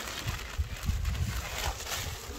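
Honeybees buzzing around their nest in a hollow tree trunk while the comb is being cut out, over a low uneven rumble.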